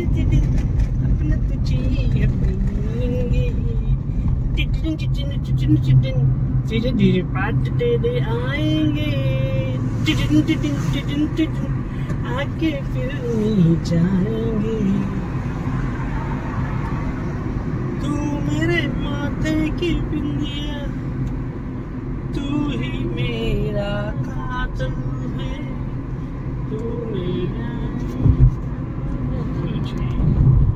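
Steady engine and road rumble inside a moving car, with a single low thump near the end.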